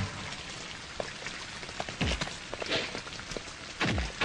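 Film sound effects: a steady rain-like patter with scattered clicks, broken by two heavy hits that drop in pitch, about two seconds in and again near the end, as a fight breaks out.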